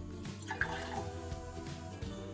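Water poured from a glass jug into a tall drinking glass, trickling and splashing, under steady background music.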